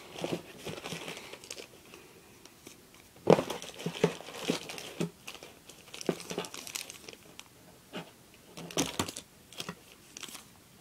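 Irregular crinkling and clicking as small toy erasers are handled close to the microphone, with a sharper knock about three seconds in.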